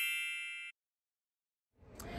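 A bright chime sound effect for a title card: many high ringing tones fading away, cut off suddenly under a second in. Then silence, with faint background sound coming in near the end.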